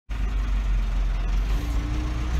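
Massey Ferguson 390 tractor's diesel engine running steadily, heard from the cab. A faint steady tone joins in about one and a half seconds in.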